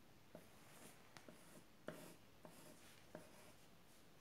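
Faint pencil strokes on paper: short scratchy strokes at an irregular pace, about one or two a second, as lines are drawn.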